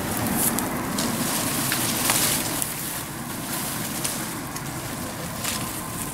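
Rustling and faint crackling of peach-tree leaves and dry grass as ripe peaches are picked, over a steady rushing background noise.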